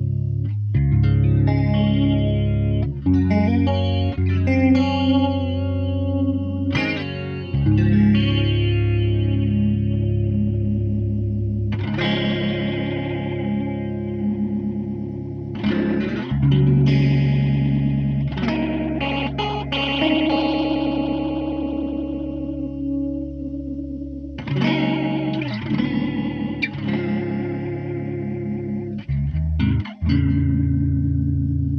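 Electric guitar (Fender Thinline Telecaster with P90 pickups) played through the Empress ZOIA's stereo flanger patch: chords and notes struck every few seconds and left to ring, the flanger sweeping through the sustain.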